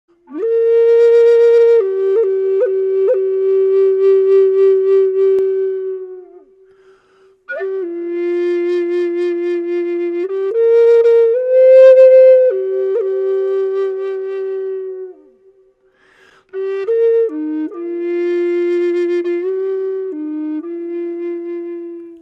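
Native American flute, a low C minor flute by Ron Stutz, playing a slow melody in three phrases of long held notes with quick ornamental flicks. There are short gaps between the phrases.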